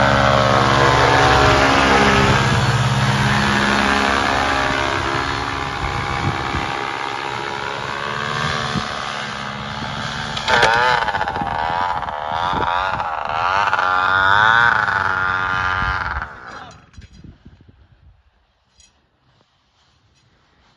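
Paramotor engine and propeller running under power as it flies low past, the pitch falling as it goes by. Later the throttle is worked repeatedly, the pitch rising and falling, until the engine is cut about sixteen seconds in for the landing, leaving it nearly quiet.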